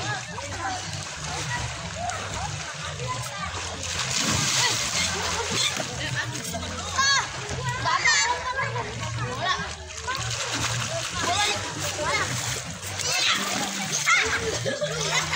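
Children splashing and swimming in a pool, with a steady wash of water and kids' shouts and calls over it, including high-pitched cries about seven and eight seconds in.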